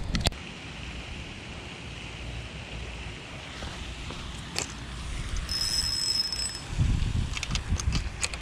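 Wind and handling noise on a body-worn camera microphone, growing louder in the last second or so, with a few light clicks. A high, steady tone sounds for about a second past the midpoint.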